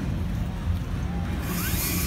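Outdoor background noise: a steady low rumble, with a high hiss coming in near the end.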